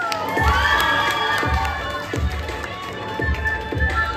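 Crowd of young people cheering with high whoops, loudest in the first second and a half, over music with a steady beat that carries on underneath.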